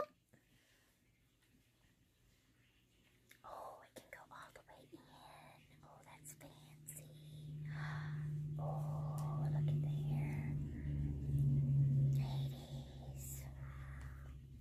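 A woman whispering softly in short bursts, starting about three seconds in. From about halfway through, a low steady hum swells and then fades near the end.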